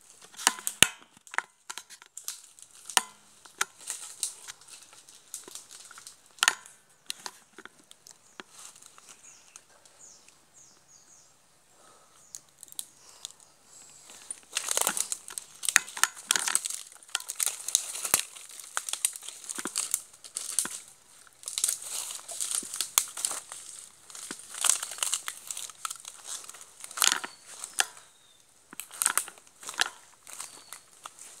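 Dry fallen palm fronds and twigs crackling and crunching under walking feet, in irregular sharp snaps. Sparse at first, busier and louder from about halfway through.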